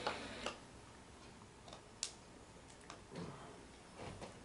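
Quiet room with a few faint, irregular clicks and small taps, the sharpest about two seconds in, and a soft low bump just after three seconds.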